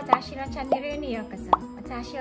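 Three short rising pop sound effects from an on-screen subscribe-button animation, about half a second to a second apart, over light background music and a voice.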